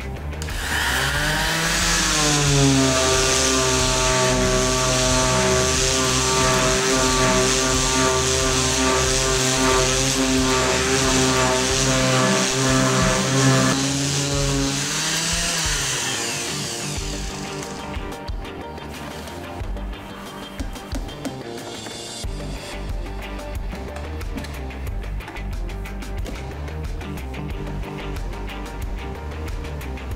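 Bosch GSS 1400 orbital sander switched on, its motor rising in pitch and settling to a steady tone with a hiss of sandpaper on wood. About fifteen seconds in it is switched off and winds down, falling in pitch. Background music plays under it and carries on alone afterwards.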